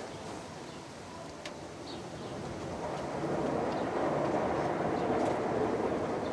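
Noise of a passing vehicle, a steady rush with no clear pitch that builds from about two seconds in and then holds, with a faint click about a second and a half in.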